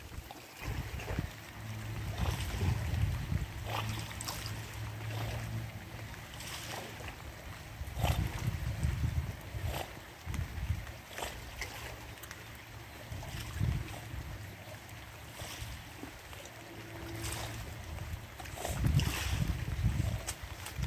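Wind buffeting the microphone in uneven gusts, with small waves lapping on choppy lake water.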